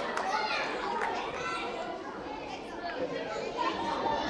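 Many children's voices chattering and calling over one another at once, a general hubbub with no single voice standing out.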